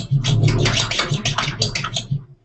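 Choppy, stuttering glitch noise from the played video's soundtrack, a dense run of rapid crackles and scratch-like stutters over a low hum, as its simulated transmission breaks up.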